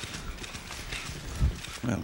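Footsteps and scattered light clicks in a large room full of standing people, with one low thump about a second and a half in. A man's voice begins at the very end.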